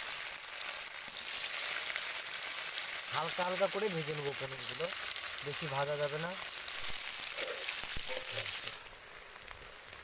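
Paneer cubes sizzling as they shallow-fry in hot oil in a kadai, a steady high hiss that drops away near the end. A person's voice comes in twice briefly in the middle.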